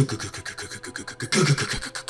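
Rapid, irregular drum-like beats standing for war drums.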